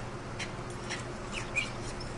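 Faint, brief high-pitched whimpers from a small dog over a steady low background hum, the dog's reaction to a tick being pulled from its skin with forceps.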